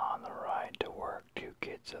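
A person whispering close to the microphone, reading a story aloud.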